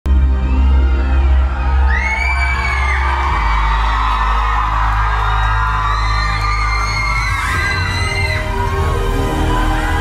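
Song intro of sustained deep bass chords that change twice, under a crowd's high-pitched screams and whoops.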